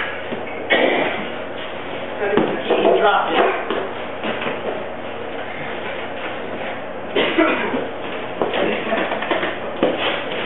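Indistinct voices with a few knocks and bumps of people moving about in a room.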